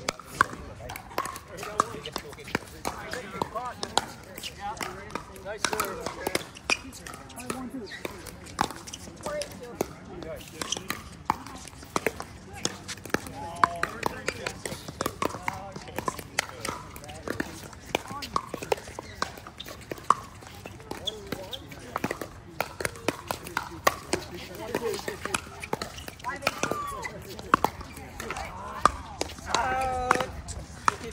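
Pickleball paddles hitting a plastic ball in rallies, sharp pocks at irregular intervals all through, with people's voices in the background.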